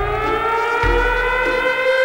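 Siren sound effect in a hip-hop DJ mix intro: a tone sweeps up in pitch, then holds steady. Deep bass hits from the beat play under it.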